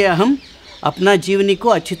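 A man's voice speaking in drawn-out, emphatic syllables, with pauses between phrases.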